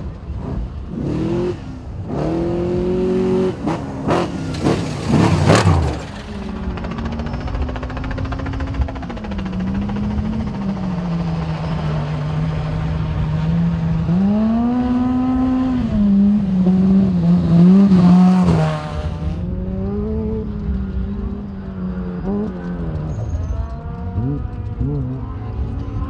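Off-road race vehicles' engines on a dirt course. A race truck revs hard and passes close, its pitch dropping sharply about five and a half seconds in. Then a side-by-side's engine approaches, its pitch rising and falling with the throttle, loudest about three-quarters of the way through before dropping away.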